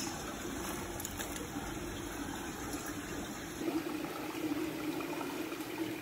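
Steady running and bubbling water, as from the inflow of a seawater holding tank.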